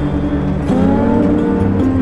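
Background music over a motorcycle engine at road speed; about two-thirds of a second in, the engine's pitch climbs and levels off as it accelerates.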